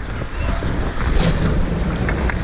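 Wind rushing over a helmet-mounted GoPro's microphone while skating on ice, with the scrape of skate blades and one short, sharp scrape a little over a second in.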